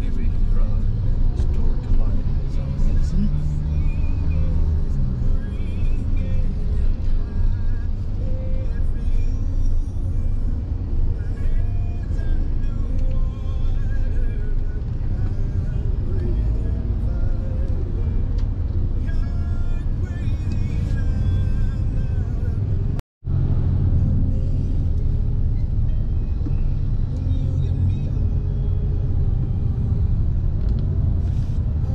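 Steady low rumble of engine and road noise inside a moving car in city traffic, with faint music playing under it. The sound drops out for a split second about three quarters of the way through.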